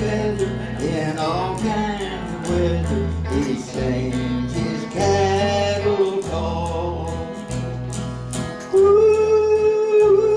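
Live country band playing, with a bass line changing notes about once a second and guitar under a sung melody; a long held, louder note starts near the end.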